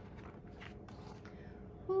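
Soft paper rustle of a large picture book's page being turned by hand, over a faint steady hum. Near the end a woman's voice begins a drawn-out, falling "who".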